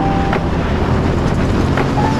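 Onboard sound of a go-kart running at speed on a track, a steady noisy rush with wind buffeting the camera microphone.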